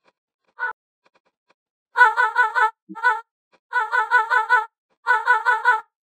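VOCALOID5 synthesized singing voice playing back short vocal one-shot phrases: high-pitched, rapidly warbling notes in four quick runs separated by short gaps, after a brief blip under a second in.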